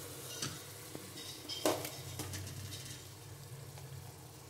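Faint sizzling of potatoes and peanuts frying in oil in a steel pressure cooker, just after rice and dal have been added. A few light clicks of a steel ladle on the pot come through, the loudest about one and a half seconds in.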